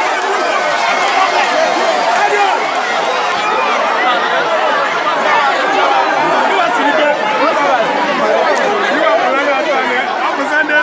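Large crowd of many voices talking and calling out at once, a dense, steady hubbub with no single voice standing out.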